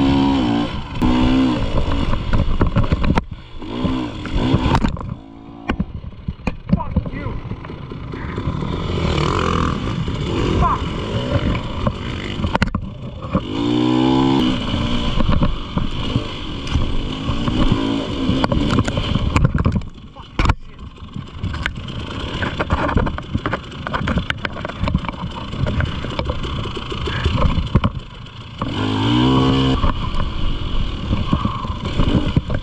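Dirt bike engine pulling hard on a rough trail, the revs climbing in steep surges near the start, about halfway and near the end. Under it runs a constant clatter of knocks and bumps as the bike hits the ground, with one sharp knock about two-thirds of the way in.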